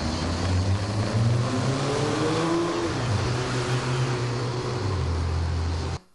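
A motor engine running, its pitch rising for a couple of seconds through the middle and then dropping back, over a steady hiss; the sound cuts off suddenly at the end.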